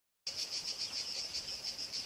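Insects chirring in a steady, rapid, even pulse at a high pitch, starting after a brief silence.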